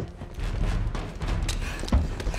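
Film soundtrack: a low rumbling drone with a few scattered knocks and a sharp thump near the end.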